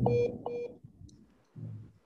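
Mobile phone beeping twice in quick succession, about half a second apart, heard through a laptop microphone in a video call: the tones of a dropped phone call. A brief low muffled sound follows near the end.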